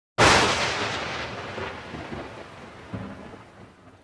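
Logo-reveal sound effect: after a moment of silence, a sudden loud noisy crash that fades away slowly over the next few seconds like a roll of thunder, with a smaller hit near the end.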